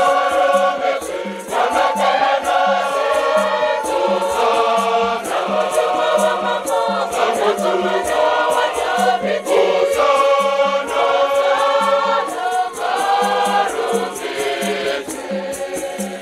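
A large choir singing a Catholic hymn in several voices, with a rattle shaken to a steady beat, about four shakes a second.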